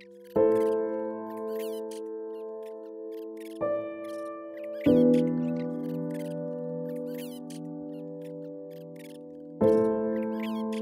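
Slow, calm piano music: four chords struck about a second in, near 4 and 5 seconds, and near the end, each left ringing. High, quick bird chirps repeat over it.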